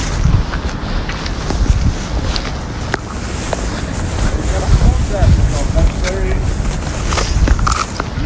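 Wind buffeting the microphone in a low, uneven rumble, with faint voices in the background about halfway through.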